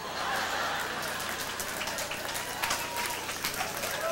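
Congregation applauding steadily, with some laughter mixed in.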